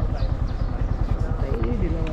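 Motorcycle engine running, a fast low pulsing, with voices talking over it.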